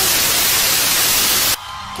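A loud, even hiss like static that cuts off suddenly about one and a half seconds in.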